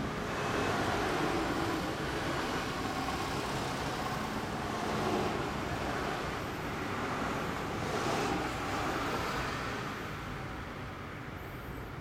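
Motor vehicle noise: a steady engine sound that swells in loudness about a second, five seconds and eight seconds in.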